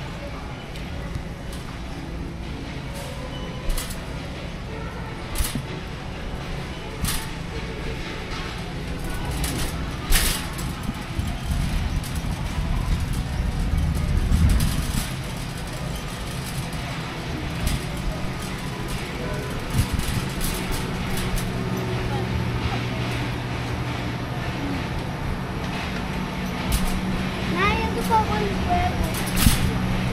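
Big-box store ambience: a pushed shopping cart rolls over a steady low hum, its wire basket rattling and giving several sharp clicks in the first ten seconds. Faint voices of other shoppers come in near the end.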